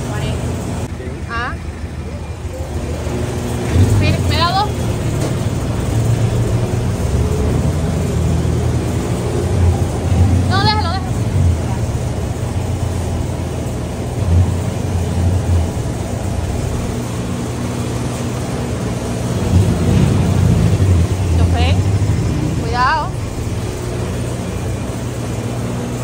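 Soft-serve ice cream machine's electric motor running with a steady low hum that swells louder several times as the soft-serve is drawn.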